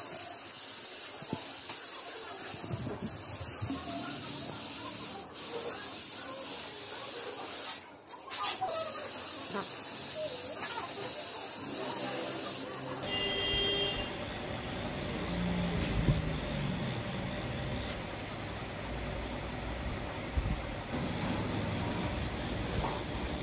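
Air spray gun hissing as it sprays paint onto a motorcycle fairing, with a brief break about eight seconds in. About thirteen seconds in the hiss stops abruptly and gives way to a lower, steady rumbling background noise.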